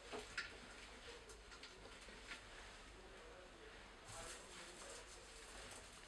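Near silence: room tone with a few faint clicks and a brief soft rustle about four seconds in.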